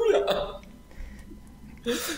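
A man's speech trailing off in the first half-second, then a brief pause with only faint short sounds before talking resumes at the end.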